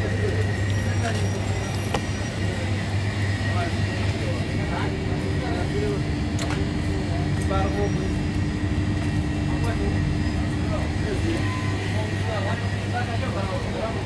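A steady low mechanical rumble runs throughout, with faint voices talking in the background.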